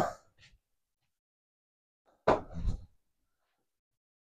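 Near silence in a small room, broken a little over two seconds in by one short sound, about half a second long.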